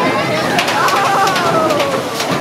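Riders on a Big Thunder Mountain Railroad mine train let out a long yell that falls slowly in pitch as the train rushes past, over the noise of the train, with a run of sharp clatters about half a second in.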